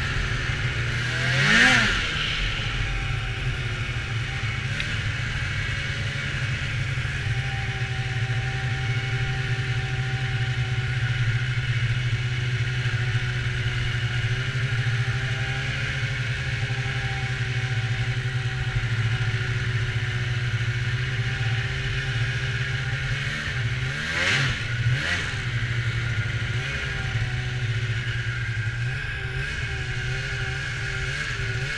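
Polaris SKS 700 snowmobile's two-stroke twin engine running at a steady cruise under the rider. It is briefly revved up and back down about a second and a half in, and again twice about 24 to 25 seconds in.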